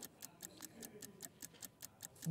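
Faint, rapid clock-like ticking of a countdown-timer sound effect, several ticks a second.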